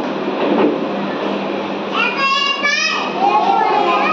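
Background murmur of a room of young children over a steady low hum, then a small child's high-pitched voice starting about halfway through.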